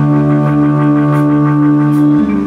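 Live rock band holding one sustained chord, the electric guitar ringing on steadily with no drum beats.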